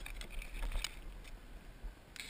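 A person clambering out of a kayak into shallow water at a grassy bank: soft water sloshing, grass rustling and a few light knocks over a low rumble of camera handling.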